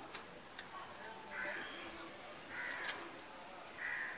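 A bird calling in short harsh notes, one about every second and a quarter, with a few sharp clicks in between.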